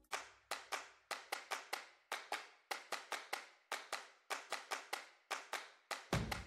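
Faint, irregular series of short sharp clicks, about three a second.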